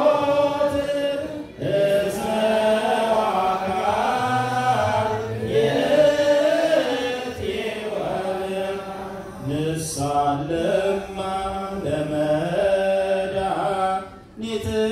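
Ethiopian Orthodox liturgical chanting: voices sing long, sliding, ornamented notes, with two brief breaks for breath.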